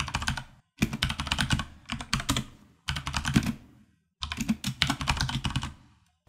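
Typing on a computer keyboard: four runs of quick keystrokes with brief pauses between them.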